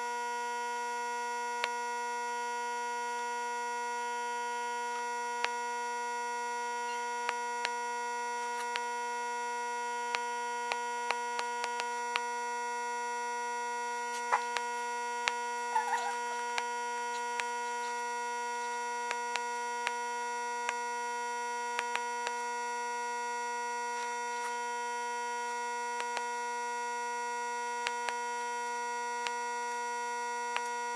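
Steady electrical hum of a wire-tip woodburning pen's power unit, one fixed buzzing tone with overtones, while the hot tip burns lines into the wood. Scattered faint clicks are heard over it, more of them near the middle.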